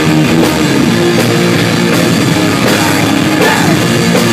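Live punk rock band playing loud, with electric guitars and a drum kit, drum and cymbal hits coming steadily under the guitars at an even, unbroken volume.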